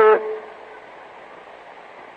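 A man's voice draws out a last word, then the steady hiss of an old, narrow-band tape recording carries on through the pause.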